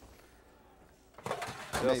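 Near quiet for about a second, then a few light clatters of a metal baking pan handled at an open wall oven, with a man's voice starting near the end.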